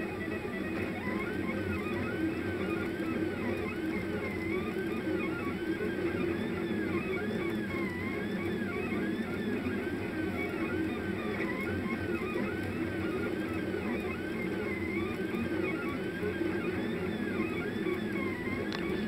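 The stepper motors of a Rostock delta-robot 3D printer whine as the effector traces circles at 50 mm/s. Their tones swing up and down in pitch over and over, about once or twice a second, following the changing speed of each motor as it goes around the curves.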